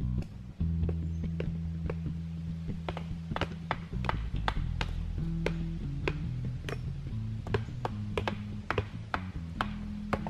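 Background music with steady low sustained notes, over which a hatchet chops into wood on a log, about two sharp strikes a second.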